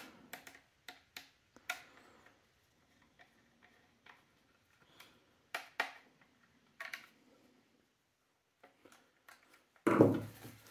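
Scattered faint clicks and taps from a flat-head screwdriver turning the trigger screw into an airsoft rifle's body as the gun is handled, with quiet gaps between; a small cluster of clicks comes near the end.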